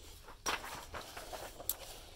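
Pages of a paper workbook being turned and handled: a sudden rustle about half a second in, then softer paper rustling with a few sharp ticks.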